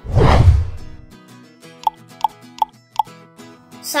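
An editing sound effect, a loud drop whose pitch falls from high to low over about the first second, marking the move to the next quiz question. After it, light background music plays with four short high notes about a third of a second apart.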